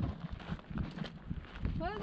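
Footsteps on a rocky red-dirt trail, a few uneven steps, with a voice starting near the end.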